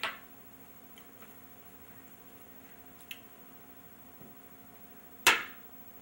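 Wooden xiangqi pieces knocking on the board: a short clack right at the start, a couple of faint ticks, then one sharp, loud clack about five seconds in as a piece is picked up or set down.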